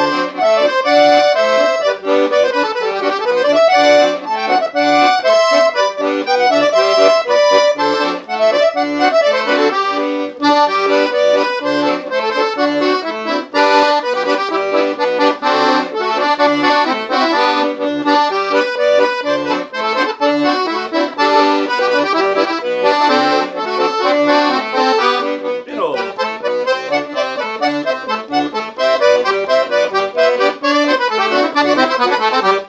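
Leticce piano accordion playing a tune at a calm, slow tempo in a marchinha/polka rhythm: a melody on the treble keyboard over left-hand bass-button accompaniment, without a break.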